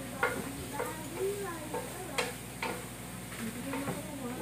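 Stir-frying broccoli and shrimp in a pan: a spatula stirs and scrapes the food, knocking sharply against the pan about five times, over a steady sizzle.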